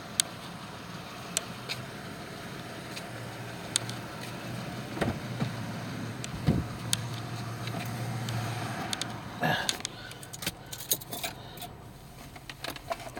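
A car engine idles close by as a low, steady hum, with scattered sharp clicks. Near the end comes a dense run of clicks and rattles with keys jangling as someone gets into a car.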